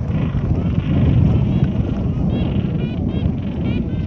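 Wind buffeting the microphone over the steady rush of surf on the beach. From about halfway through, a run of short, high chirping bird calls comes in quick succession.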